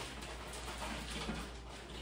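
Faint rustle and trickle of loose reptile substrate pouring slowly from a small hole cut in a plastic bag into an empty glass tank.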